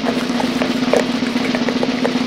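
Continuous drum roll sound effect, running at a steady level without a break.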